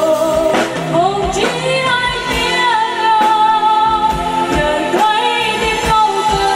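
A woman singing through a microphone with a live band, holding long notes with vibrato, over a drum kit keeping a steady beat and a keyboard.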